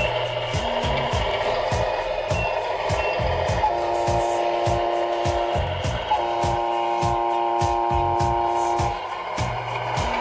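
Electronic scale air horn from a Tamiya Scania R620 RC truck's sound unit, blown twice: about two seconds starting a little under four seconds in, then about three seconds. Underneath runs a steady rhythmic beat with regular low thumps.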